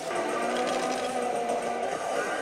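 Pachislot machine playing electronic music and sound effects for its battle animation, a few steady held notes over the constant clatter and din of a slot parlour.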